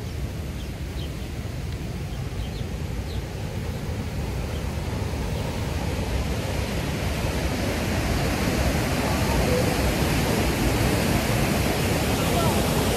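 Rushing whitewater of the Waikato River at Huka Falls, a steady rush that grows gradually louder and fuller.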